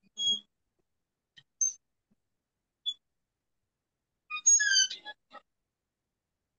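A few short, high-pitched animal chirps, then a louder run of calls falling in pitch about four and a half seconds in.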